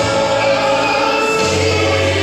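Gospel music with a choir singing over a steady bass line.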